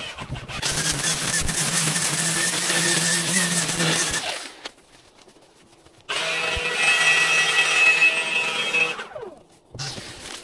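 String trimmer running at full speed through tall grass. It cuts out about four seconds in, runs again, and stops near the end with a falling whine as it winds down.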